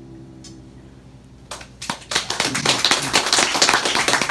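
A piano's final chord dying away, then after about a second and a half of near stillness a few hand claps start and quickly swell into steady audience applause.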